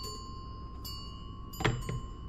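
Brass bell's ringing tone dying away. A light metallic tap about a second in and a louder double clank near the end each add a brief high ring.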